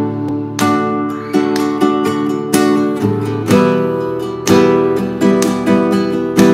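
Nylon-string classical guitar strummed in a basic 4/4 ballad pattern of down- and up-strokes over a G–D–Em–C chord progression, changing chord about halfway through.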